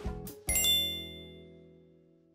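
Closing music jingle: a few short notes, then a bright, ringing chime chord struck about half a second in that fades away.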